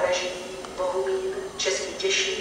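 Railway station public-address announcement: a voice over the platform loudspeakers speaking in short, evenly pitched phrases with brief pauses between them.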